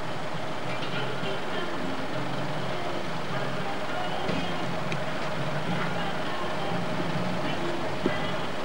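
A truck engine running steadily, with people talking indistinctly in the background.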